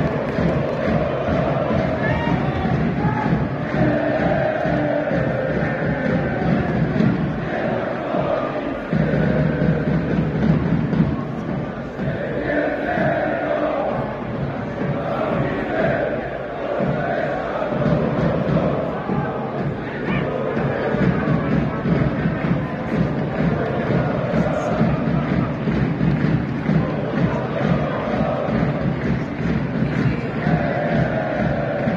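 A group of football supporters chanting and singing together in unison, a steady run of repeated chants from a few dozen voices.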